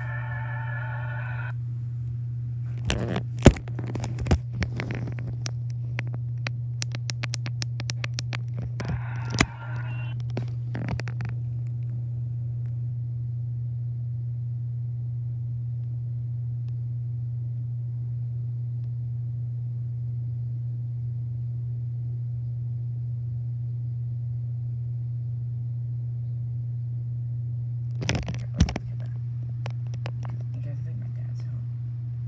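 A steady low hum throughout, with a stage show's music from a laptop speaker for the first second or so before it cuts off. Then come clicks, knocks and rubbing as the recording phone is handled, dense for several seconds early on and twice more near the end, with long stretches of only the hum between.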